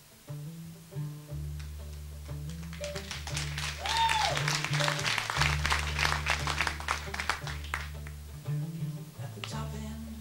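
Live country band playing a song's instrumental opening: picked acoustic guitar over long held bass notes that change every second or so, with a short sliding note near the middle.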